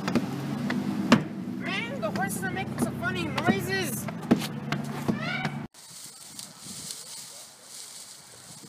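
A person's voice making a quick run of high, rising-and-falling squeals over a steady low hum, with a few sharp knocks. The sound cuts off abruptly about two-thirds of the way through, leaving faint wind noise on the microphone.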